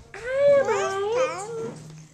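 A toddler's high-pitched, wordless wavering call, about a second and a half long, rising and dipping in pitch. It is her new way of asking for food.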